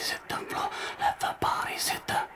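A whispered voice speaking in short, breathy phrases.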